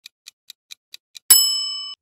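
Quiz timer sound effect: quick clock ticks, about four or five a second, then a single bell ding about 1.3 seconds in that rings briefly and fades, marking time up on the question.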